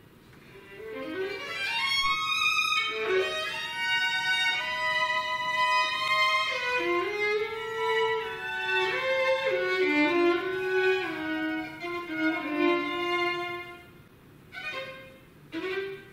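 Solo violin playing unaccompanied: after a brief quiet moment, quick rising runs lead into a loud passage of held and moving notes, then short, separate, quieter notes near the end.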